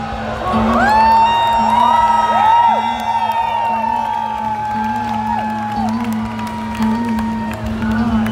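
Live band music: a long high note is held for about five seconds over a steady low drone, with the violin being bowed. Whoops and cheers from the crowd rise over it.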